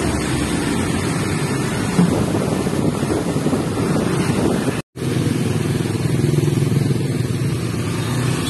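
Street traffic: motorcycle and truck engines running steadily close by, with a momentary drop to silence about five seconds in.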